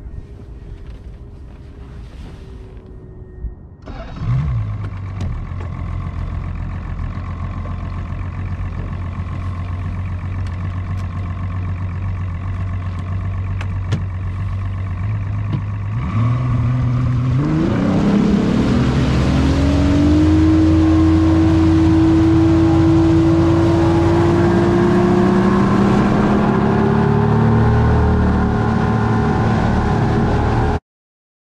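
A bass boat's outboard motor starting about four seconds in and idling steadily, then throttled up about sixteen seconds in, its pitch rising quickly before it settles into a steady, louder run with a rushing noise of wind and water over it.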